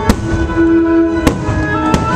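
Aerial firework shells bursting: three sharp bangs, one just after the start, one just past halfway and one near the end, over loud music.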